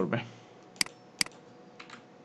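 Computer keyboard keys being pressed: two sharp key presses about half a second apart, then a fainter tap near the end.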